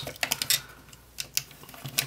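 Hard plastic parts of a G1 Headmasters Weirdwolf transforming toy clicking and knocking as its limbs and joints are moved by hand. There are several small clicks early on, then a couple more about a second in and one near the end.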